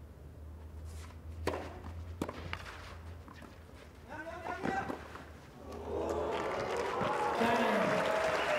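Tennis balls struck by rackets, several sharp hits, during a fast doubles rally with volleys at the net. From about six seconds in, a crowd cheers and applauds the winning shot and keeps it up to the end.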